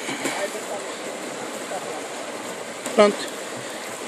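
Steady rush of running water from a nearby stream, with faint rustling of leaves and stems as a hand pushes into low plants. A short spoken word comes near the end.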